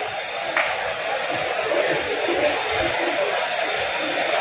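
Steady rushing hiss of water spraying from a demonstration kitchen shower head into a plastic tub, with faint indistinct voices.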